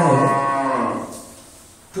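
Speech: a man's voice drawing out the last word of a phrase in one long held, falling tone that fades out about a second in.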